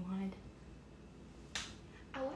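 A voice trailing off at the start, then one short, sharp snap-like hiss about one and a half seconds in.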